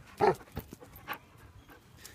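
A Belgian Malinois gives one short bark, falling in pitch, about a quarter of a second in, followed by a few faint clicks.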